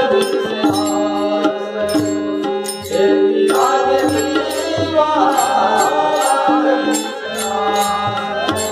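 Devotional bhajan: a man singing with a harmonium, its reeds holding steady notes, over an even beat of small hand cymbals and a drum.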